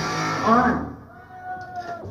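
A punk rock band's song ending on a lo-fi live cassette tape, the music dropping away in the first second. A drawn-out voice then sounds faintly over the PA before the between-song talk.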